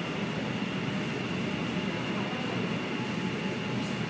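Metro train braking into the station behind platform screen doors: a steady rumble with a thin high whine, both cutting off with a click near the end as the train comes to a stop.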